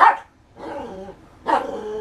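Small poodle barking in play at a rubber toy held over its head: a sharp bark right at the start and another about a second and a half later, with shorter pitched vocal sounds between them.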